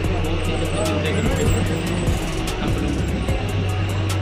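Steady low drone of a bus engine, heard from inside the moving bus, under background music with a steady beat and some voices.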